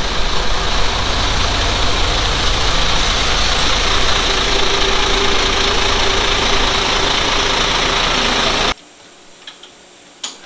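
Air-cooled Deutz V12 quad-turbo diesel running loudly on a chassis dyno: a steady heavy rumble with a strong high hiss over it. The sound cuts off abruptly near the end.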